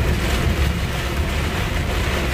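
Steady inside-the-cab noise of a truck driving on a motorway in heavy rain: a low engine and road rumble under an even hiss of rain and wet tyres.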